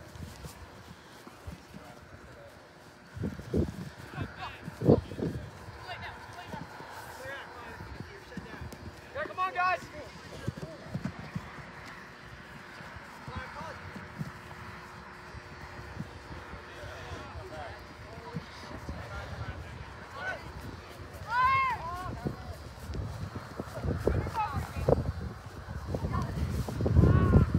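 Players' shouts carrying across an open field: a few short, distant calls, clearest about nine seconds in and again near the end. Low, irregular thumps and rumble run underneath, the loudest a few seconds in.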